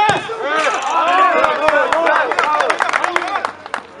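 Several men shouting at once during a shot on goal in a small-sided football match, with a sharp thud of the ball being kicked at the very start and a scatter of sharp knocks through the middle.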